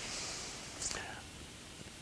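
Faint, breathy whisper-like voice sounds: a soft hiss in the first part and a brief sibilant sound just before one second, over low room tone.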